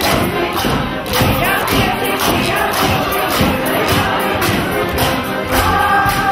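Mummers' group singing a folk song in chorus while walking, over a steady beat of knocks and rattles from hand percussion, with crowd noise.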